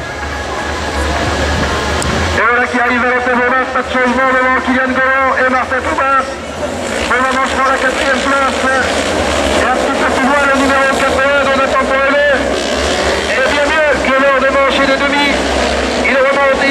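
Several autocross race cars racing on a dirt circuit, their engines rising and falling in pitch as they rev and shift. A commentator's voice over loudspeakers runs alongside the engines.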